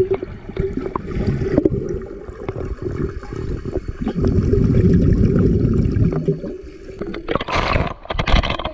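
Muffled underwater sound of a swimmer moving through pool water, with bubbling and scattered clicks over a steady low hum, loudest about halfway through. Near the end it gives way to brighter splashing at the surface.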